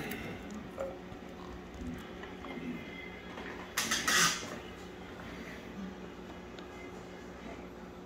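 A glass jar being handled as its lid is put on, with a short scraping rustle about four seconds in, over a faint steady hum.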